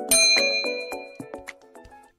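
A single bell ding sound effect, the notification-bell chime of a subscribe animation, struck once and ringing out over about a second and a half, over background music.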